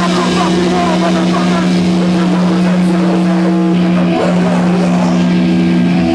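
A low note sustained and ringing steadily through a band's amplifiers, a held drone between song parts, with voices over it.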